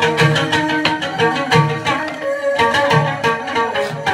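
Chầu văn ritual music: strings over a steady percussion beat, with a low drum stroke about every two-thirds of a second.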